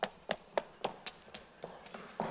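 A child's running footsteps on a hard floor: quick, sharp steps, about four a second.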